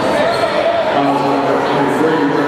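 Voices of the spectators chattering and calling out in a school gym while a basketball is bounced on the hardwood floor before a free throw.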